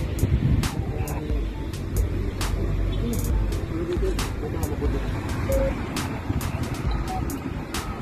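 Steady low rumble of road traffic, with background music and scattered sharp clicks.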